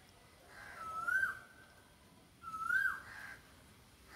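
A bird calling twice, about two seconds apart: each call is a short whistled note that rises and then drops sharply at the end.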